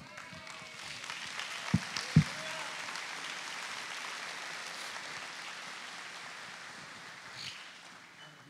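Church congregation applauding at the close of a talk, swelling over the first second or two and slowly dying away near the end. Two short low thumps sound about two seconds in.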